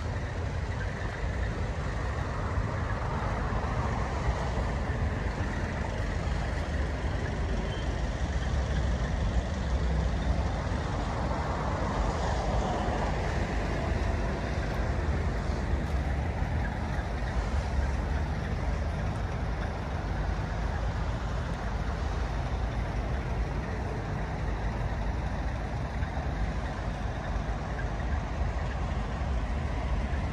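Steady outdoor noise: a low, unsteady wind rumble on the microphone over a haze of road traffic, with no distinct events.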